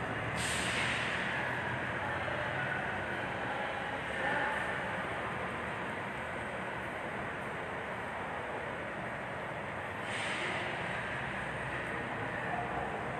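Steady background noise of a large showroom: an even rushing hiss with no distinct events, swelling slightly about four seconds in and again near ten seconds.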